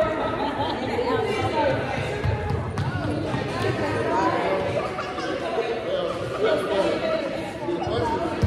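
Indistinct chatter of several adults and small children talking over one another, echoing in a large gymnasium.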